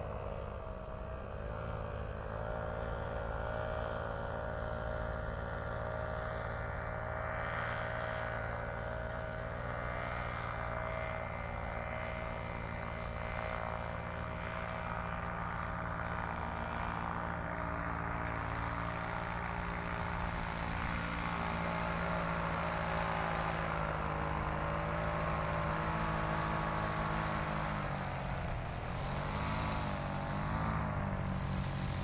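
Paramotor's small engine and propeller running steadily, its pitch dipping briefly about a second in and wavering up and down near the end as the throttle changes.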